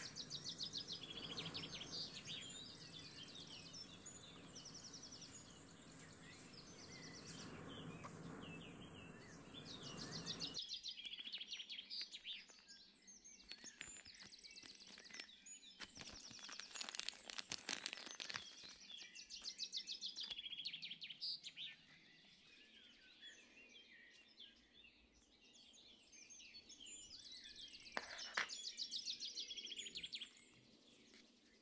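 Small birds singing in the background, a mix of short chirps and quick repeated trills throughout. A low steady hum underneath stops abruptly about ten seconds in, and there is some brief crackling handling noise in the middle.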